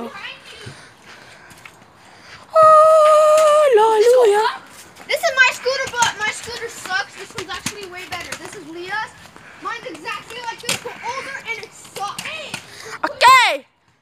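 Children shouting and yelling without clear words: a long, loud held shout about two and a half seconds in that drops in pitch at its end, then scattered chatter and calls, and another loud whoop near the end.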